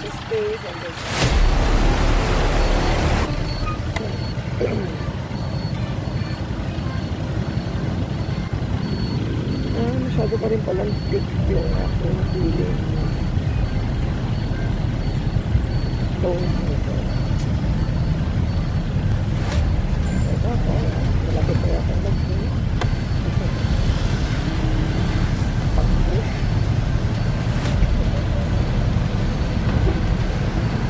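Motorcycle ride in traffic: steady engine and road rumble with wind on the microphone, louder for the first few seconds and then settling into a low, even drone as the bike creeps along.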